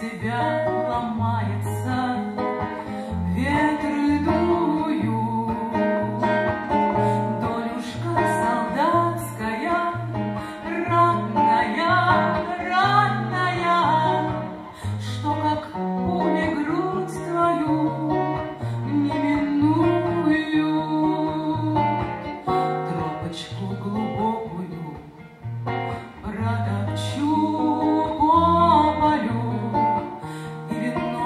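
A woman singing a slow, wavering melody over acoustic guitar accompaniment with a steady line of picked bass notes.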